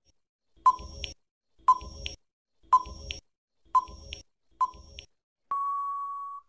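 Quiz countdown-timer sound effect: five short ticks about a second apart, then a steady high beep about a second long signalling that the answer time is up.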